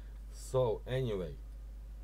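A man's voice saying a few words a little way in, over a steady low electrical hum.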